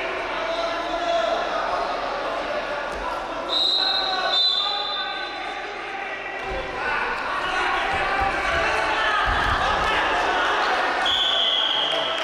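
Freestyle wrestlers grappling on a mat in an arena, with coaches and spectators shouting. In the second half come low thuds of bodies hitting the mat as one wrestler is taken down, and short high squeaks sound about four seconds in and near the end.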